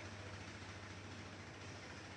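Faint background noise: a steady low hum under a soft, even hiss.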